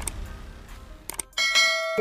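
Subscribe-button animation sound effect: a whoosh dies away, a couple of mouse clicks come about a second in, then a bright notification-bell ding rings on steadily.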